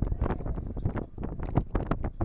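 Wind rumbling on the microphone, with irregular sharp knocks scattered through it.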